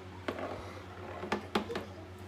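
A metal baking tray of cookies being handled and set down on a kitchen counter: one light knock a little after the start, then three close together in the second half, over a steady low hum.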